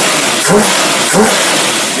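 Engine fed by a Carter AFB four-barrel carburetor, revved hard with a loud rush of air through the carburetor as the rear (secondary) barrels open. The engine note climbs three times in quick succession, about once every half second.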